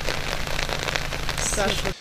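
Steady rain falling on floodwater and wet ground: a dense, even patter with a fine crackle. It cuts off abruptly just before the end.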